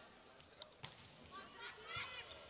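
Faint volleyball play: a sharp slap of hand on ball a little under a second in as the serve is struck, with another short ball contact near the end.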